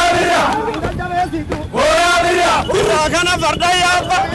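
A group of men chanting and shouting together, a string of long calls that rise and fall in pitch, about one a second.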